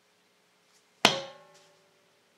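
Stratocaster-style electric guitar struck once about a second in: a sharp attack, then its strings ringing briefly and dying away within about half a second.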